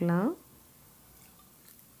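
A voice finishing a word in the first third of a second, then only faint background noise.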